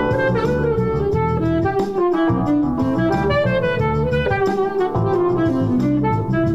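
Alto saxophone improvising a jazz line over a backing track that vamps between E7sus4 and Dm7, two bars each, with a low bass-and-drum groove underneath.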